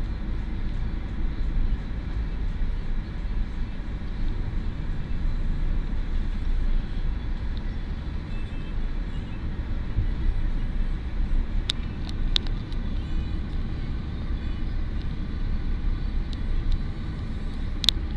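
Road and engine noise heard from inside a moving car: a steady low rumble, with a few sharp clicks about twelve seconds in and one at the very end.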